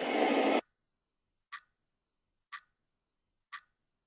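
A rush of noise that cuts off abruptly about half a second in, then dead silence broken by three short clock-like ticks, one second apart.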